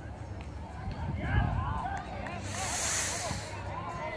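Men's voices shouting across an outdoor football pitch, with a low rumble throughout and a brief hiss about two and a half seconds in.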